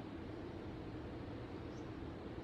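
Steady room tone in a church: a low hum with faint hiss and no distinct event.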